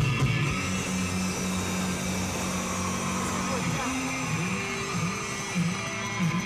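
Live punk-rock band playing: distorted electric guitars and bass guitar hold a chord that rings out, then a new repeating riff starts about four seconds in.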